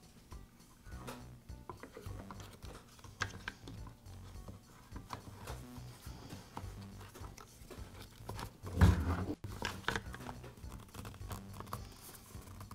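A string trimmer's plastic rear engine cover being fitted and handled: light plastic clicks and rattles, with one louder thump about nine seconds in. Quiet background music plays underneath.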